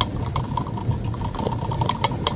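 A car's engine and road noise heard from inside the cabin while driving on a wet road: a steady low rumble with scattered light ticks.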